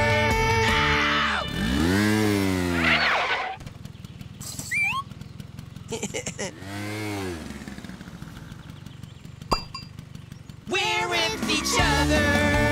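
Cartoon soundtrack: a children's song breaks off, followed by sound effects: two long pitched glides that rise and then fall, a low buzzing hum with a few short chirps and a single sharp click. The music starts again near the end.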